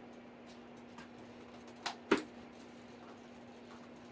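Two short clicks from handling a foam RC airplane about two seconds in, a faint one followed quickly by a sharp louder one, over a faint steady low hum.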